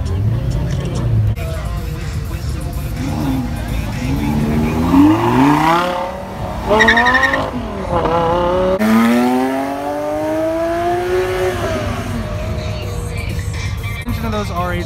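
A Lamborghini's engine revving hard as the car accelerates away, its pitch climbing three times and dropping back between climbs as it shifts up through the gears.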